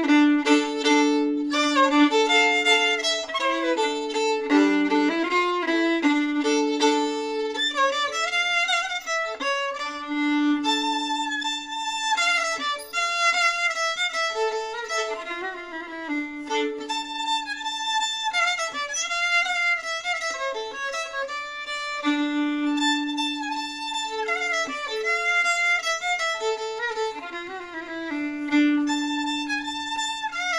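Solo fiddle playing a Swedish schottis tune, with a low note held beneath much of the moving melody.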